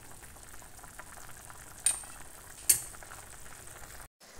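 A pot of stew with bamboo shoot simmering on a gas stove, a faint steady bubbling. A metal ladle stirs it, with two sharp clicks against the metal pot a little under a second apart near the middle.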